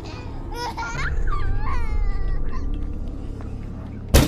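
A baby laughing and babbling in short gliding squeals, loudest in the first half and middle, over a low droning music bed.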